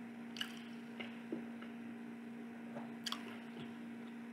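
Chewing a mouthful of soft chicken burger: faint wet squishing with a few short mouth clicks and smacks.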